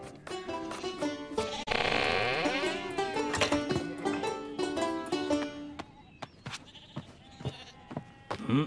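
The closing instrumental bars of a cartoon theme tune, with sheep bleating over it. The music ends about six seconds in, leaving faint scattered clicks and taps.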